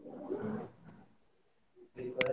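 A person's voice briefly in the first half second, a short untranscribed mutter or drawn-out vocal sound, then near silence.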